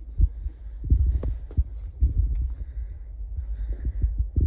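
Irregular low thumps of footsteps on a paved floor and a handheld phone being jostled while walking, with a few faint clicks.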